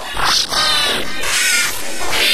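A children's electronic dance mix heavily distorted by audio effects, slowed into a smeared, warbling sound with rising and falling sweeps, briefly dipping in loudness about half a second in.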